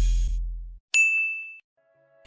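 The tail of background music fading out, then a single bright ding, a sound-effect chime that rings briefly and dies away.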